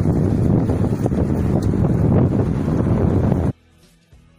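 Heavy wind noise buffeting a phone's microphone on a moving bicycle, cutting off abruptly near the end, where faint guitar music takes over.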